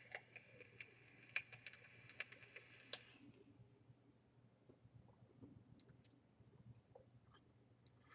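Vape dripper (rebuildable dripping atomizer) coil firing: a faint sizzling hiss with crackles for about three seconds, then only scattered faint ticks.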